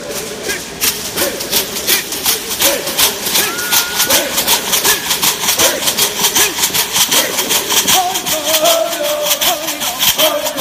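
Stomp dance: leg rattles (shell shakers) worn by the dancers shaking in a steady rhythm, about four to five strokes a second, under group chanted singing.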